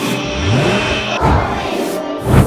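Background music with a rising swoosh transition effect that climbs in pitch over about a second, followed by a low thump about a second and a quarter in.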